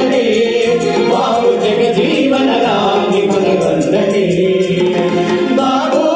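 Several voices singing a song together into microphones over amplified backing music, with a light recurring percussion tick.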